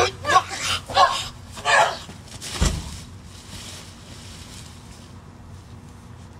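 Stunt performers' short, hard vocal grunts of effort in a staged fight, four in quick succession, then one dull thud of an impact about two and a half seconds in.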